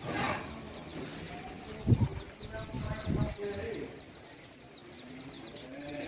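Small birds chirping, many short high calls repeating steadily. There is a short breathy rush at the start, and low thumps come about two seconds in (the loudest) and again about a second later.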